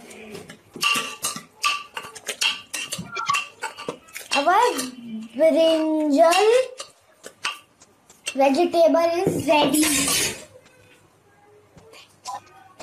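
Metal spoon clinking and scraping against an aluminium pressure cooker while the food inside is stirred. There is a quick run of sharp clinks over the first few seconds and a few more later on.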